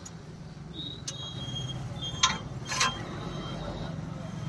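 Thin steel rod scraping and clinking against a hand-operated ring bending jig as it is bent into a curve: a few short clinks and squeaks, the two loudest a little past halfway, over a steady low hum.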